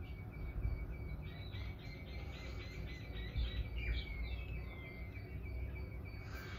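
Birds chirping in the background, with a fast run of short chirps in the middle, over a steady low room noise.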